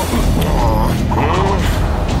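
A run of creaking, straining sound effects over background music with a steady beat.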